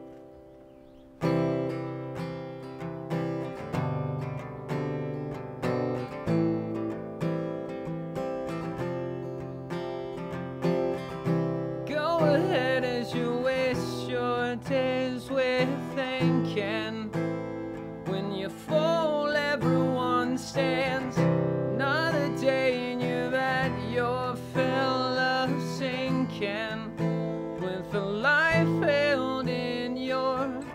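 Acoustic guitar starts strumming chords about a second in. A man's singing voice joins over the strumming about twelve seconds in, and the song carries on to the end.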